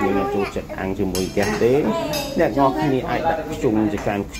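Metal spoons and chopsticks clinking against bowls, plates and a metal hot pot, with a few sharp clinks standing out, under continuous voices.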